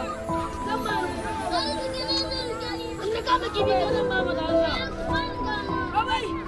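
Children's voices calling and chattering while playing, over background music of long held notes.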